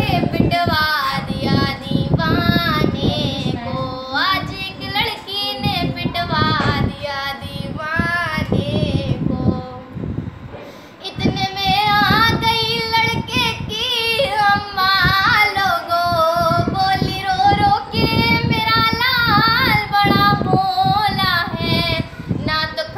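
A young girl singing solo and unaccompanied, a melodic line in long sustained phrases, with a short breath pause about ten seconds in.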